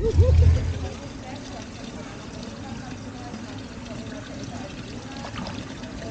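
A loud low rumble in the first second, then a steady rushing background with faint voices in it.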